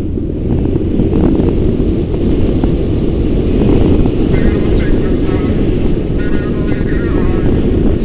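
Motorcycle riding at speed, heard through a helmet-mounted microphone: a steady low rush of wind buffeting over the engine, getting louder about a second in.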